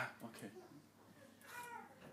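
Faint sound in a pause: a short burst of noise right at the start, then a brief high voice with a falling pitch about one and a half seconds in.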